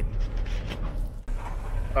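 Steady low drone of road and engine noise inside the cab of a 2018 Ford F-150 with the 3.5 EcoBoost V6, cruising at highway speed while towing a dump trailer. The drone dips briefly a little past the middle.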